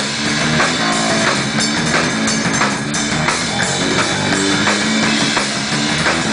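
Live band playing: a Parquer drum kit beating out a steady rock groove with cymbals, locked together with an electric bass line.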